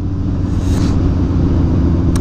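Sport motorcycle engine running steadily while cruising, with wind and road noise on the helmet-mounted microphone.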